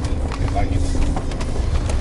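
Mercedes G500's V8 and drivetrain heard from inside the cabin while driving slowly off-road: a steady low rumble, with a few light knocks.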